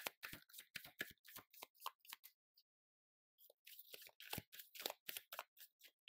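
A deck of tarot cards shuffled by hand: quick, soft clicks and flicks of cards slipping against each other, in two runs of about two seconds each with a pause of about a second between them.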